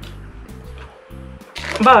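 Background music with low bass notes that change every half second or so, and a brief spoken word near the end.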